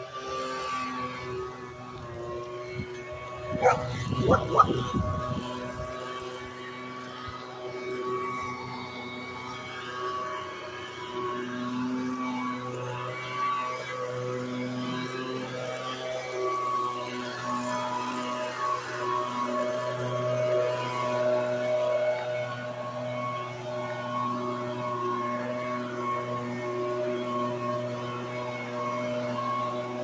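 Handheld motorized yard tool running with a steady droning hum that holds one pitch, wavering slightly. Laughter around four to five seconds in.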